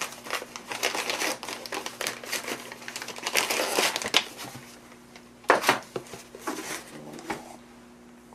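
Packing material and a plastic anti-static bag crinkling and rustling as a parcel is unwrapped by hand. The rustling is dense for the first four seconds, with one sharp, loud crinkle about five and a half seconds in, then a few quieter rustles.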